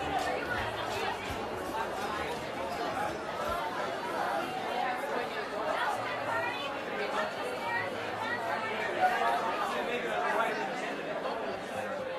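Restaurant dining-room hubbub: many voices talking at once in a steady, indistinct chatter, with one brief sharp sound about nine seconds in.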